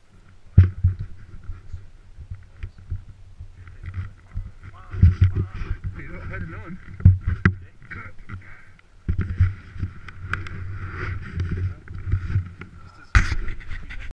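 Irregular knocks, bumps and rubbing of a handlebar-mounted action camera being handled and moved, with a loud knock about half a second in and another near the end. Muffled voices are heard under the handling noise.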